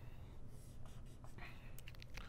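Faint strokes of a dry-erase marker drawing on a whiteboard, the clearest stroke about one and a half seconds in.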